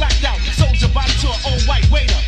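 Hip-hop track playing: rapped vocals over a beat with heavy bass and regular drum hits.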